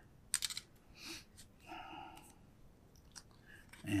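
A few faint, sharp clicks and light taps of small metal items being handled: sail needles going back into a small hinged metal tin.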